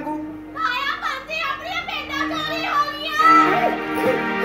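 A high-pitched voice crying out in rising and falling phrases over stage background music with a steady held note; the music swells louder near the end.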